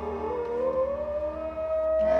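Live folk ensemble of wooden horn, violin, double bass and button accordion playing: a long held note slides slowly upward in pitch over a steady low drone.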